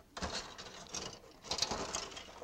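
Rustling and light clicking of a plastic model-kit sprue being picked up and handled on a workbench, louder for a moment about one and a half seconds in.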